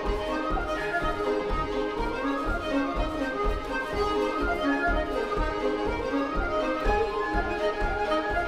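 Irish traditional tune played on fiddle, tin whistle and button accordion together, with a steady, even beat.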